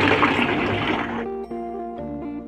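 Milky rice wine pouring in a stream from a jug through a wire-mesh strainer into a plastic bucket, splashing. The pour dies away a little over a second in, leaving background music with held notes.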